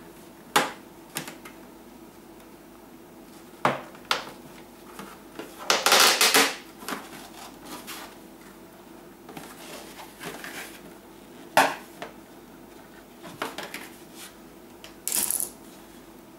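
Handling noise from a freshly vacuum-formed plastic sheet and the steel scissors moulded into it: scattered knocks, clicks and clinks as the sheet is flexed and the scissors are worked out, with a louder, longer rattle about six seconds in.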